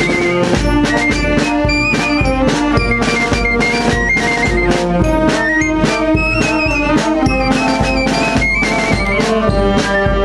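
Portuguese wind band playing a march: clarinet, piccolo, alto saxophones and trombones in full harmony over a steady drum beat.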